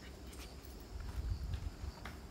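Footsteps on a stone path: a few light, separate steps, with a low rumble near the middle.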